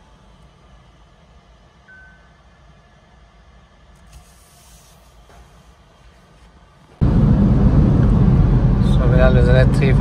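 Car cabin noise while driving at speed: a faint low hum with a short, thin beep about two seconds in, then, about seven seconds in, road and engine noise inside the cabin comes in suddenly and much louder.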